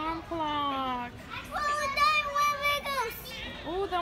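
A young child's voice making wordless, sing-song calls: a long falling call, then a higher, louder drawn-out one.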